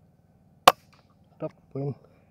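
A single shot from a Sharp Ace air rifle: one sharp crack less than a second in.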